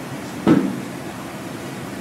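Steady hiss of room tone in a pause between speech, with one short thump about half a second in.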